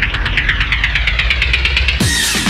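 Electronic dance music break: a rapidly pulsing, buzzing synth whose filter sweeps up and down, over a steady low bass.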